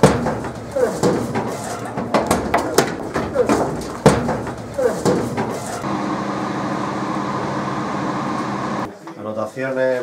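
Commotion of a police raid: repeated knocks and bangs with voices, a loud bang at the start and another about four seconds in. From about six seconds, a steady machine hum in an indoor cannabis grow room runs for three seconds and cuts off suddenly.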